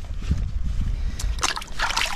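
Shallow river water splashing and sloshing as a hand and a pinpointer probe work through it, with a burst of splashing in the second half.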